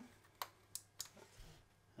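A few faint, sharp clicks as a memory card is pushed into the 3D printer's card slot and seated.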